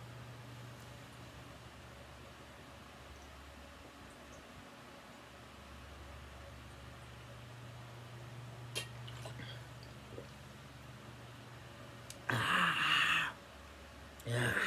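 A man's loud, breathy gasp for air lasting about a second, near the end, as he comes up from chugging soda from a 2-litre plastic bottle. Before it there is only a steady low hum and a small click.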